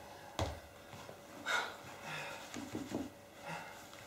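Heeled shoes stepping on a wooden stage floor, the last of a series of steps falling shortly after the start, then a soft breathy rustle and small faint movement sounds as the walker kneels at a plastic tub.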